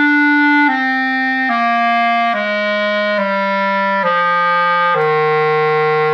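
Buffet R13 B♭ clarinet playing a descending F major scale, stepping down a note about every second, to a longer held low F. That low F sounds flat, about 17 cents low on a tuner: the long-standing flat low F of French-system clarinets.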